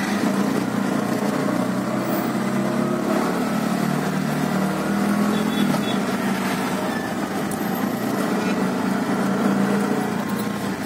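Auto rickshaw engine running steadily, heard from inside the cabin as it drives; the engine note dips slightly around the middle and picks up again.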